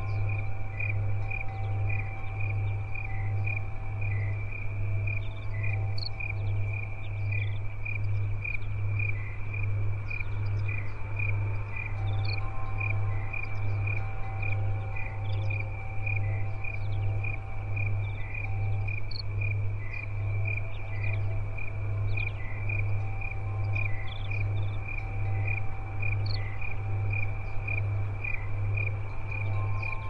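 A chorus of crickets chirping steadily, about two chirps a second, over a loud low pulsing hum. Faint long tones of Tibetan singing bowls come and go.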